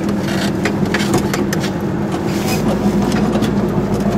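Goggomobil's air-cooled two-stroke twin-cylinder engine running steadily while driving, heard from inside the small car's cabin, with scattered clicks and rattles. A deeper rumble comes in about halfway through.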